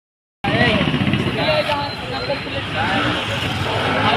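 Road traffic of motorbikes and scooters running, with people's voices talking over it.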